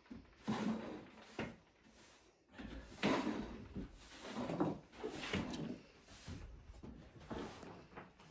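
Broom sweeping dust and debris across a bare floor: a series of quiet, irregular strokes.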